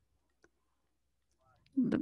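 Near silence on the call line, broken by one faint click about half a second in; a voice starts up briefly near the end.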